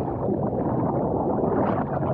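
Water rushing and churning as a camera riding a water slide plunges into the pool and goes under, a steady, muffled rush of water noise.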